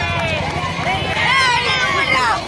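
A crowd of schoolchildren shouting together, many high voices overlapping, as in a slogan-chanting march.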